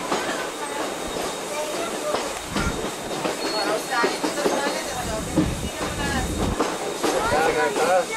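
Vintage railway carriage running at speed: the wheels clatter over the rail joints and the carriage rattles, with passengers' voices mixed in.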